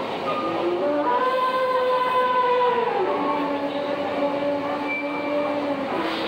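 The Grand Éléphant walking machine sounding its trumpet call as its trunk lifts. The call is a series of long, held horn-like tones, with a higher note for the first half and a lower note after a drop about three seconds in.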